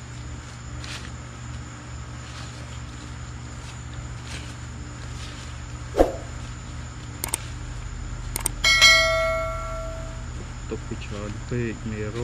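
A steady low hum, broken by a sharp click about halfway through and, a couple of seconds later, a metallic bell-like ring that fades away over about a second and a half.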